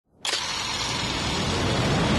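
Cinematic intro sound effect for a logo: a sharp hit about a quarter second in, then a dense rumbling noise that swells steadily.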